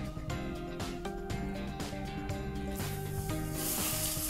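Soft background music, joined a little under three seconds in by a hissing sizzle: piping-hot oil poured over ground spices on boiled chickpeas.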